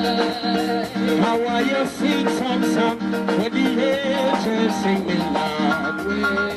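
Live band music with a steady beat, guitar and a singing voice.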